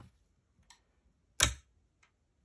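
Stiff, cold slime squeezed by hand, mostly quiet but for a faint tick and then one sharp click about one and a half seconds in. The slime is hard from the cold, firm as a century egg.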